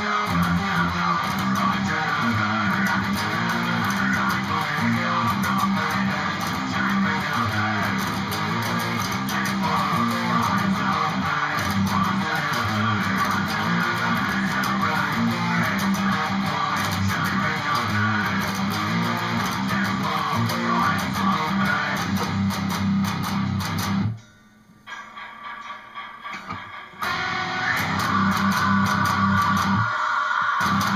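Electric guitar playing a heavy metal riff in a steady rhythm. About 24 s in the sound drops away almost to nothing, stays quieter for a few seconds, then the full riff comes back near the end.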